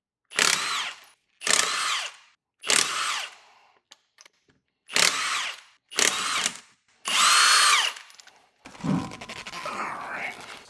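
Milwaukee M18 cordless impact wrench spinning lug nuts off a car wheel: six short bursts of about a second each, the motor's whine rising and then falling in each, the last burst the longest. Softer rattling follows near the end.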